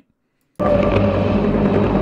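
About half a second of silence, then the training film's soundtrack cuts in abruptly: eerie background music, a steady low drone with held tones.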